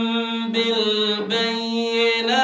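A man reciting the Quran in the melodic chanting style into a microphone: long held notes with slight ornamenting turns, and a brief break about a second in before the next held note.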